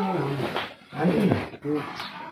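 People talking in short bursts of speech.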